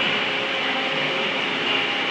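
Steady mechanical background noise in a warehouse: a continuous even whir with a faint constant hum, like running ventilation or plant machinery.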